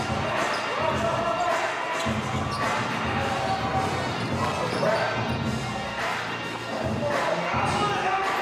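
Live arena sound of a basketball being dribbled on the court, over arena music with a steady bass line and crowd noise.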